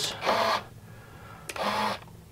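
Two small RC hobby servos on one channel through a Y harness, running in two short bursts of about half a second each, one just after the start and one about a second and a half in, as they drive the flap pushrods.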